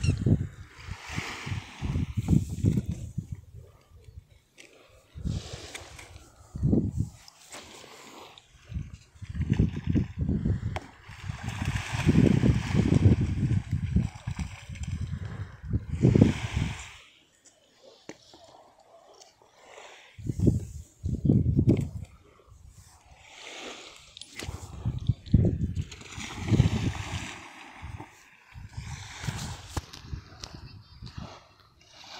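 Wind buffeting the phone's microphone in irregular gusts, with a short lull a little past the middle.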